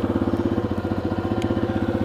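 Yamaha XT250's single-cylinder four-stroke engine idling steadily, with an even, rapid run of exhaust pulses.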